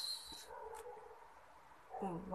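A soft hushing 'shh' that ends about half a second in, then a brief faint hum from a small child.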